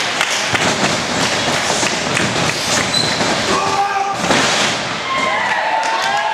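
Pro wrestling in the ring: repeated thuds of strikes and bodies hitting the ring mat, one heavier impact about four seconds in, with shouting and chatter from ringside spectators.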